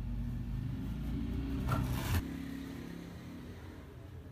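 A motor vehicle's engine running as a low, steady hum, with a short hissing scrape about two seconds in; the hum then drops off suddenly, leaving a fainter one.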